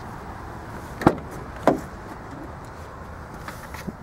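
Car's rear passenger door being opened: two sharp clicks about a second in and again just over half a second later, of the handle and latch releasing, over steady low background noise.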